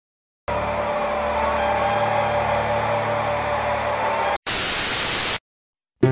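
Static-like hiss with a low hum and a few faint steady tones for about four seconds, then a short break and about a second of bright white-noise static that cuts off suddenly.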